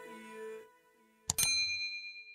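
Notification-bell ding from a subscribe-button animation: a single sharp, bright chime about 1.3 seconds in that rings on and fades over about a second.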